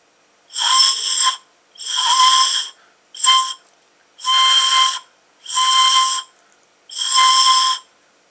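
A single plastic drinking straw, stopped at the far end with a thumb, blown across its open end like one pan pipe. Six breathy hooted notes all on the same pitch, the third one short.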